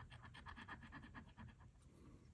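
A coin scraping the latex coating off a scratch-off lottery ticket in rapid, even strokes, about ten a second, faint. The coating comes off with difficulty, so the coin is pressed down hard.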